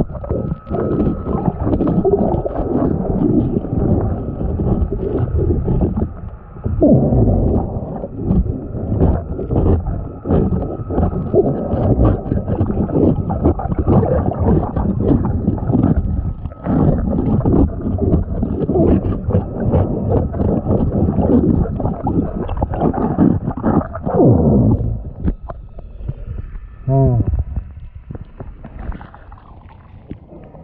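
Underwater scraping and scrubbing against a fibreglass boat hull, picked up by a submerged head-mounted camera: a dense, muffled run of strokes and water rush. It drops away about five seconds before the end, as the camera nears the surface.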